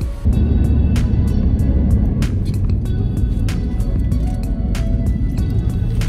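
Background music with heavy bass and a steady beat, kicking in suddenly just after the start.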